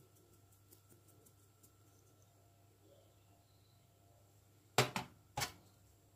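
A black pepper shaker being shaken over a bowl of seasoned meat: two short, sharp bursts about half a second apart near the end, otherwise near-quiet room tone with a few faint ticks.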